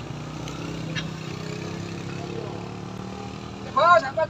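A motor scooter and a car labour up a steep hairpin climb, their engines making a steady low hum, with a sharp click about a second in. Loud shouted calls break in near the end.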